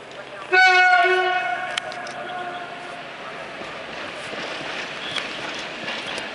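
Air horn of a PKP EP07 electric locomotive sounding one short blast about half a second in, its tone trailing away over the next couple of seconds, followed by the rumble of the approaching train on the rails.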